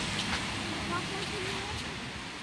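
Steady street noise: traffic hiss on a wet road, with a few faint voices of people nearby.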